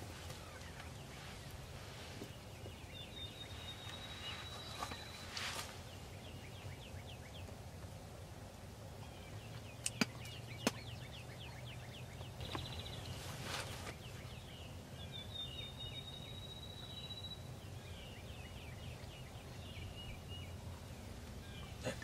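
Wild turkeys and songbirds in a spring field: songbird trills and chips come and go, with two short rattling turkey gobbles about five and thirteen seconds in. Two sharp clicks, the loudest sounds, come close together about ten seconds in.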